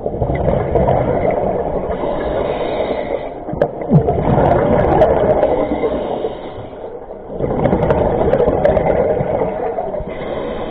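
Scuba diver's regulator exhaling through the water, a gurgling rumble of bubbles that comes in three long stretches, with short lulls between them as the diver breathes in.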